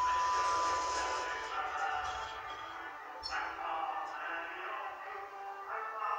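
Orona lift's arrival chime, its lower second note ringing for about the first second and a half, over a steady hiss with faint voices in the background.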